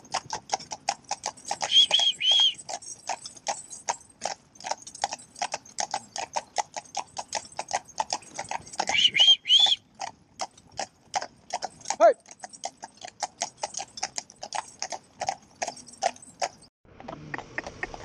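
Shod hooves of a pair of Friesian horses clip-clopping on tarmac at a steady walk, several strikes a second from the two horses. A few short high chirps come about 2 s in and again near 9 s. Near the end the hoofbeats cut off abruptly.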